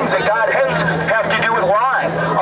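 A man speaking through a handheld microphone and portable loudspeaker, with a steady low hum underneath.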